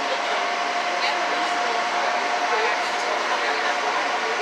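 Small harbour boat's engine running steadily while under way, a constant drone with one held whine, mixed with the rush of water and wind past the hull.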